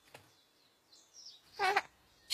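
Mostly quiet, with a faint click early on, then a brief, high-pitched vocal sound near the end.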